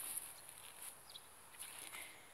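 Quiet outdoor garden ambience: faint rustling and soft steps among the plants, with one brief faint bird chirp about a second in.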